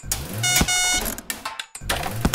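Cartoon sound effects: a quick run of short, bright beeping tones over a low hum in the first second, then a brief lull.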